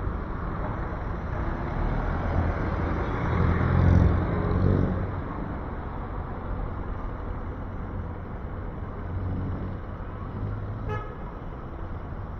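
City street traffic: a motor vehicle passes close, its engine rumble swelling to a peak about four seconds in and then fading under steady traffic noise. Near the end comes one short horn toot.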